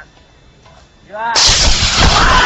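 An aerosol spray can explodes in a campfire: a sudden loud blast about a second and a half in, which carries straight on as a loud rush of noise.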